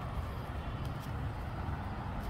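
Steady low outdoor background rumble, with no distinct events standing out.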